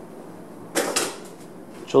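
A short rustle of hands handling tools about a second in, over a faint steady background hum.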